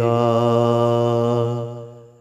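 A man's voice singing an Urdu religious poem (nazm), holding the last syllable of 'sakega' as one long steady note that fades away near the end.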